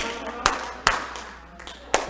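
About four sharp, separate hand claps, unevenly spaced over two seconds.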